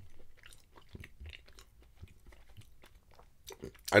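A person chewing a mouthful of soft chocolate brownie: faint, irregular small mouth clicks.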